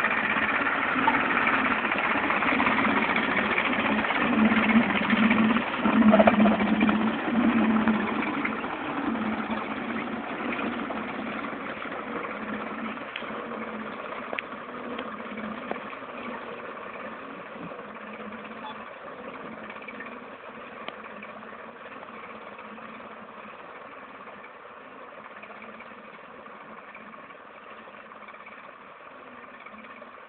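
Farm tractor engine running steadily, loudest about four to eight seconds in, then fading gradually over the rest.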